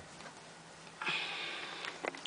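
A person's breath close to the microphone: a breathy hiss starting about a second in and lasting nearly a second.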